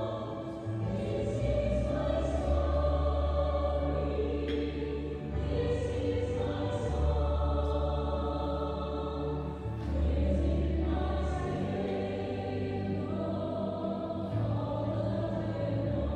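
Choir singing an offertory hymn over long held bass notes that change every few seconds.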